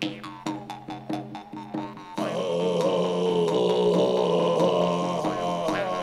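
A large hand-held frame drum beaten at a steady pulse, about three strokes a second, over a low drone. About two seconds in, a man's deep chanting voice comes in loudly over the drum and holds.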